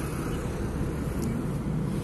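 A car being driven, heard from inside the cabin: a steady low rumble of engine and road noise.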